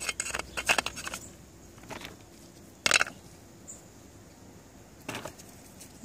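Small lava rocks clicking and scraping against each other and a terracotta pot as they are set in place by hand. A quick run of clicks comes in the first second, one louder clack about three seconds in, and a few lighter clicks near the end.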